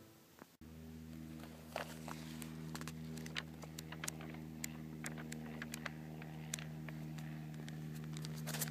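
Pages of a bound paper cemetery register being leafed through, making many short soft ticks and flicks over a steady low hum.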